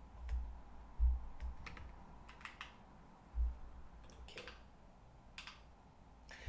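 Quiet, scattered clicks of a computer keyboard with a few dull low thumps.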